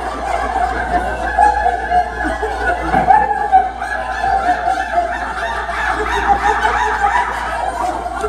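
A roomful of people laughing together on purpose in high, bird-like voices, a laughter yoga exercise. Many voices overlap continuously throughout.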